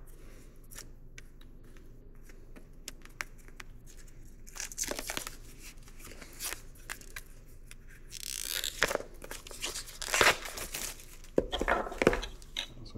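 A small cardboard box being opened with a pocket knife: scratchy slitting and tearing of its seal and wrapping. It starts as faint scattered clicks and turns into busier bursts of tearing and crinkling from about halfway through.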